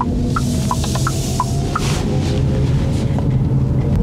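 Background music of short plucked or struck notes at varying pitches, about three a second, thinning out about halfway through. Under it is steady tyre and road noise inside the car cabin, a bit loud from summer tyres on this surface.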